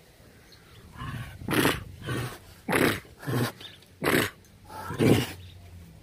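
Tiger chuffing, its friendly greeting: a run of about six short breathy puffs through the nose, roughly one every half second to a second.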